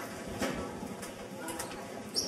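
Audience murmur with a few sharp knocks and clicks as a microphone is adjusted on its stand, one about half a second in and another near the end.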